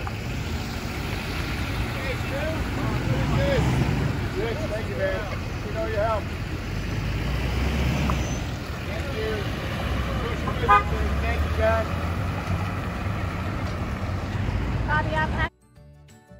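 Cars and a dump truck rolling slowly past with short car-horn honks, while people call out and cheer over the low rumble of the engines. The sound cuts off abruptly about fifteen seconds in and music takes over.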